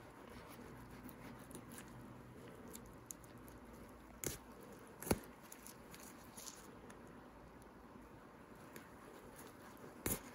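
Faint sounds of a skinning knife cutting through a lynx's ear cartilage and hide, with a few small clicks, the two sharpest about four and five seconds in.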